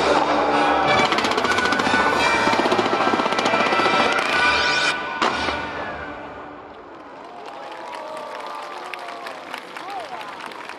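Fireworks bursting in a dense, rapid crackling barrage over loud show music; the barrage stops about five seconds in and the sound drops away.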